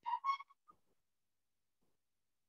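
Whiteboard eraser squeaking against the board as it wipes off a written word: two short squeaks, then quiet.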